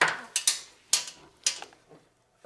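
Several sharp clicks and knocks, a little under a second apart, as a compression tester's hose and fittings are handled and moved between spark plug holes on an air-cooled VW engine.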